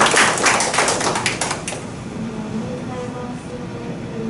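A small group of people clapping, the applause dying away about a second and a half in, followed by faint talking in the room.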